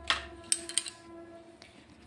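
A few light clicks and taps as a metal spoon and an opened plastic butter tub are handled, the loudest about half a second in, over a faint steady hum.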